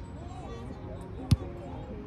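A volleyball hit once by a player, a single sharp smack a little past halfway, over faint voices of players across the field.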